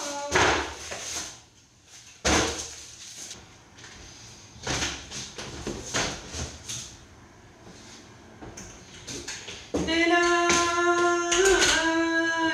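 Large cardboard box being handled and folded: several short scraping, crackling bursts of cardboard with pauses between. Near the end a woman hums a tune in long held notes.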